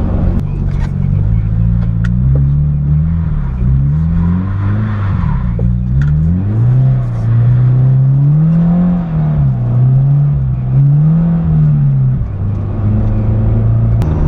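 Subaru BRZ's flat-four engine through an Invidia N1 cat-back exhaust, heard from inside the cabin, with the revs rising and falling several times as the throttle is worked. The engine note is steadier near the end.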